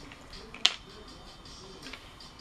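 A glass nail polish bottle gives one sharp click, as though knocked against glass, about two-thirds of a second in, with a fainter tick near the end.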